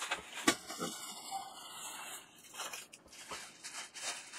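Plastic packaging rustling and crinkling as small bagged parts are handled and pulled out of a shipping bag, with a sharp click about half a second in.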